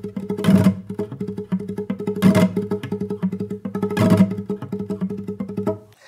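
Classical guitar played in fast tremolo, rapid repeated plucked notes over a bass line, broken by three strummed rasgueado chords about two seconds apart.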